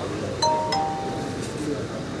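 A two-note chime, a ding-dong: two strikes about a third of a second apart, the second lower in pitch, each ringing on for about a second before fading. A murmur of voices runs underneath.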